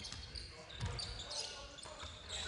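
Basketball bouncing on a hardwood gym floor during live play, with faint gym noise; one low thump a little under a second in.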